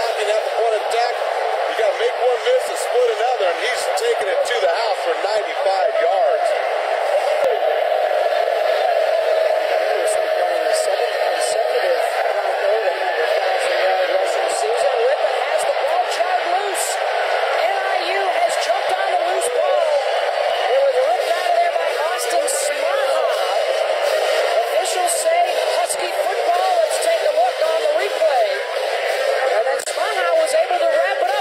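Continuous, muffled babble of many overlapping voices from a stadium crowd, with the bass cut away so that no words come through. It runs at an even loudness, without pauses.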